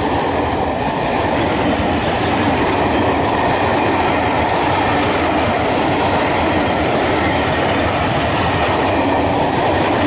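Pullman carriages of the Belmond British Pullman rolling past close by at speed, their wheels running on the rails in a steady, loud noise.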